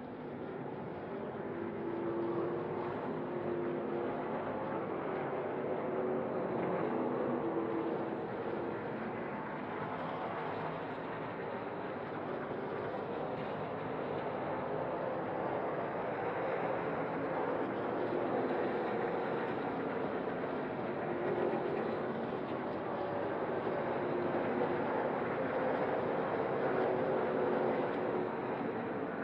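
Engines of NASCAR Craftsman Truck Series race trucks running on track, a continuous drone that swells and eases gently as the trucks go through the corners.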